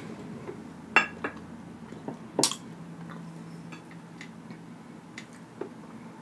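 Tabletop clinks and clicks as a small seasoning jar is handled and set down and a fork is used on a plate: two sharp clicks about one and two and a half seconds in, with a few fainter ticks between.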